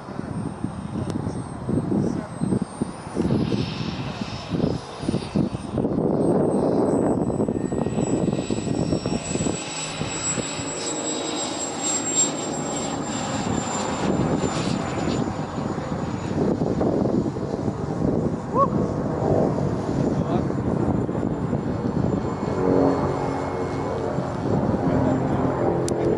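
Radio-controlled model jet's turbine engine running, a rushing noise with a thin high whine on top. The whine rises briefly about four seconds in, then sinks slowly and settles at a lower pitch about halfway through, as the turbine winds down through the landing.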